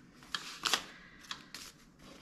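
Paper banknotes being handled and slid into a clear acrylic cash stand: several short clicks and rustles, the loudest just under a second in.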